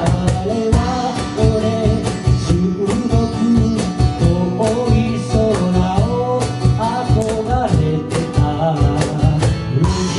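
Live acoustic song: a singer's vocal melody over a strummed steel-string acoustic guitar, with a cajon keeping a steady beat underneath.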